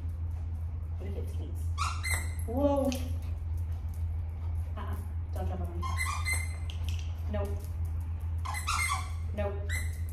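Three short vocal sounds with bending pitch, about three seconds apart, over a steady low hum.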